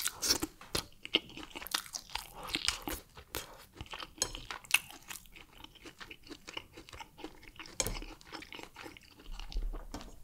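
Close-miked chewing of barbecued turkey wing: sharp crunches and wet mouth clicks, thick in the first few seconds and thinning out later.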